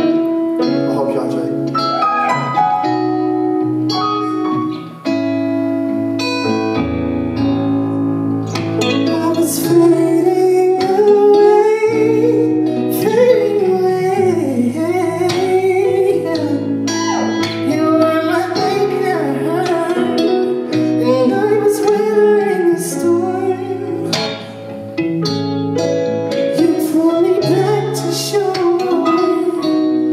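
A live band of keyboard and electric guitar plays a song in a hall, with steady sustained chords. A lead vocal sings the melody over them, most prominent from about nine seconds in.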